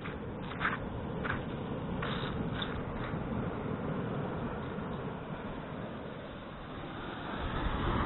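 Outdoor beach noise: a steady rumble of wind on the microphone over a wash of surf. A few short, faint high sounds come in the first three seconds.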